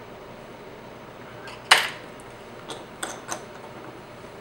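A single sharp click a little under two seconds in, then a few fainter ticks, from small metal tools being handled at a fly-tying vise.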